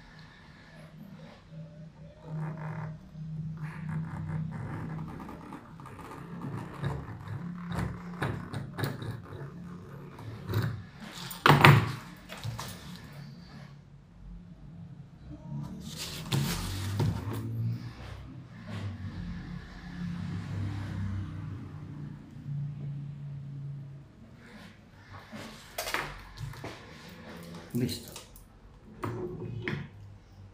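A paper pattern being worked on a hard tabletop: the sheet is handled, slid and rustled, with sharp taps and knocks of a pencil or compass. The longest rustle comes about a third of the way through, just after a sharp knock.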